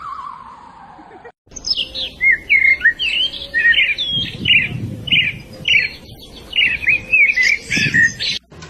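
A bird chirping and whistling in a rapid run of short, varied notes, starting after a brief gap about a second and a half in. Before that, a wavering electronic tone glides down and cuts off.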